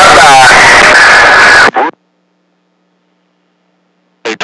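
A voice coming over a CB radio, buried in heavy static, cuts off abruptly about two seconds in. After that there is near silence with a faint steady hum.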